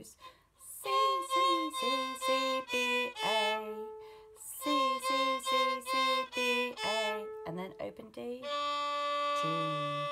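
Solo violin playing a short phrase of repeated notes stepping down to a held note, twice: a low-two C natural four times, then B, then open A. A long, steady open-D note follows, with a woman's voice counting over it near the end.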